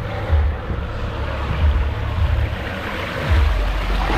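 Water rushing down a flume body slide under a rider on a mat, with repeated low thumps, ending in a splashdown into the pool near the end.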